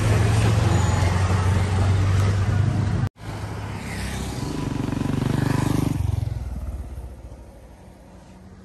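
A steady low hum with background noise that cuts off abruptly about three seconds in. Then a motorcycle approaches and passes, its engine growing louder until about six seconds in and then fading away.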